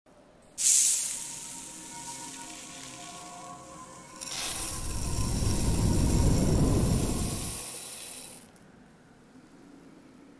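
Intro logo-animation sound effects: a sudden hit with a bright, hissing shimmer about half a second in that slowly fades, then a swelling whoosh with a deep low end from about four seconds, peaking and dying away by about eight and a half seconds as the particle logo assembles.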